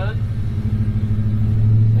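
Inside the cab of a 1976 Ford F-150 with a swapped-in Coyote 5.0 V8, cruising on the road: a steady low engine drone with road rumble, growing a little louder about one and a half seconds in.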